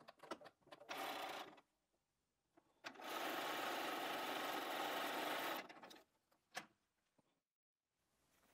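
Domestic sewing machine stitching strips of cotton fabric together: a short run of about half a second, then a steady run of about three seconds that tails off as it stops. A single click follows.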